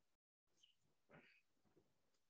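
Near silence: a faint background hiss that cuts in and out, with one faint, brief sound about a second in.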